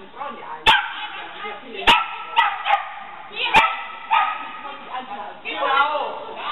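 Shetland sheepdog barking during an agility run: several sharp, high-pitched barks spaced a second or two apart.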